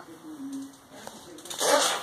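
A man's voice pausing mid-sentence: a faint low hum of hesitation, then the voice picking up again near the end. No distinct non-speech sound stands out.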